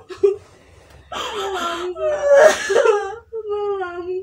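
A young woman crying and wailing: a short sob, then long drawn-out wavering cries. She is distressed, believing her mother is gravely ill.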